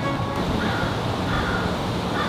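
A crow cawing: short calls about once a second over a low, steady background.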